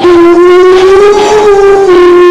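Live rock band: one loud, long held note that wavers slightly in pitch, starting abruptly and standing out over the band.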